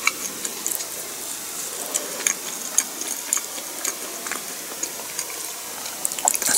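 A person chewing a bite of pizza toast close to the microphone: irregular wet mouth clicks and smacks, a few a second.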